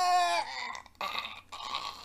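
Cartoon vomiting sound: a voiced retching cry that falls slightly in pitch for about half a second, then a rough, gurgling spew from about a second in.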